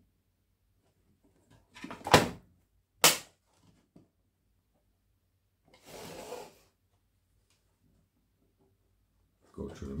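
Handling noise from a knife clamp being fitted onto a BESS edge-sharpness tester: two sharp knocks about a second apart, then a brief scrape a few seconds later.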